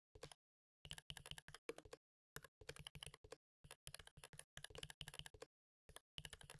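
Faint computer keyboard typing: quick runs of keystrokes with short pauses between them.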